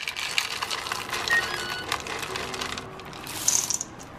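Chocolate chips poured from a metal measuring cup into a stainless steel mixing bowl: a dense patter of small hard clicks for about two and a half seconds, then a short rasp near the end.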